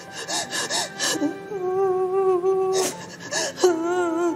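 A young woman crying, with several sharp, gasping sobbing breaths over background music.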